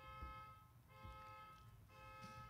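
Faint electronic horn-like tone, several pitches sounding together, pulsing about once a second in half-second blasts.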